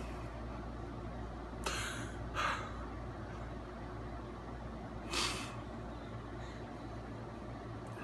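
Three short, sharp breaths through the nose, the first two close together about two seconds in and the third about five seconds in, over a low steady room hum.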